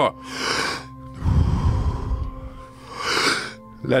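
A man's deep power breathing close to the microphone: a quick deep inhale, a long forceful exhale that buffets the microphone with a low rumble, then another quick inhale, the last breaths of a round before the breath-hold. Soft steady ambient music drones underneath.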